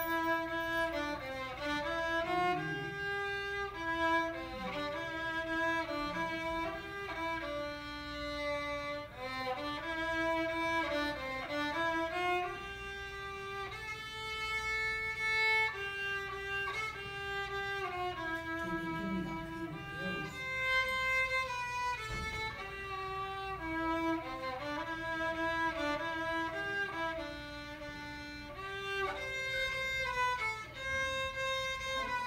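Solo violin, unaccompanied, playing a slow melody of single bowed notes that move mostly step by step in its lower range, with a few longer held notes.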